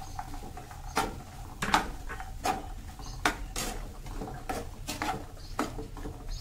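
Plastic spatula stirring diced vegetables and peas in a nonstick kadai, giving irregular scrapes and taps against the pan about once or twice a second.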